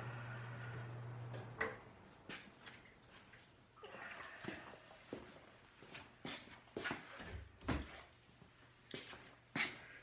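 A steady low hum that stops about one and a half seconds in, then scattered clicks and knocks of parts being handled as the fuel tank is lifted off a Norton Commando motorcycle, with a low thud a little past seven seconds.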